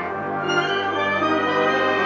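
Concert band playing held, sustained chords, with brass including French horns prominent over woodwinds; the harmony changes right at the start and then sustains.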